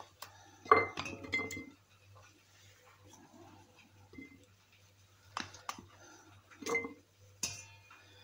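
Glass clinking as cucumber pieces and fingers knock against a glass bowl and a glass pickle jar: a sharp ringing clink about a second in, faint handling, then a few more clinks near the end.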